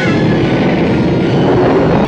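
Film sound of a fire blazing up, a loud rushing roar of flames that swells slightly and cuts off abruptly at the end.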